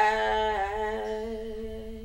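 A woman's voice holding one long sung note, loudest at the start and slowly fading, with a slight waver in pitch.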